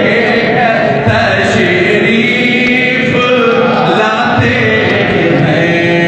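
Several voices chanting together in a steady devotional recitation, without a break.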